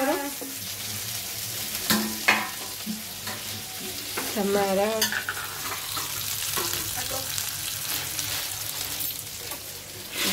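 Food frying in hot oil in a pan, a steady sizzle, with a few sharp clicks about two seconds in and again near the middle.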